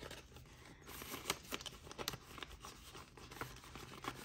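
Paper banknotes being handled and slid into a clear vinyl binder pocket: a scattered run of faint rustles, crinkles and small clicks.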